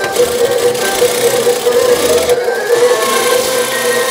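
A toy claw machine running, its small motors whirring steadily as the claw travels and lowers onto a capsule, with music playing alongside. The whir dips briefly a little past halfway.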